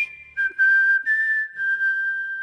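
Closing bars of the background music: a lone whistled melody of three notes after the accompaniment stops, the last note held and fading out.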